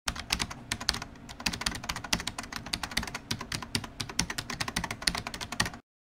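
Rapid, irregular clicking, many clicks a second, that cuts off suddenly just before the end.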